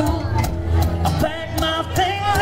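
Live acoustic band music: two acoustic guitars strummed under a bending lead line from a harmonica played into a microphone cupped in the hands.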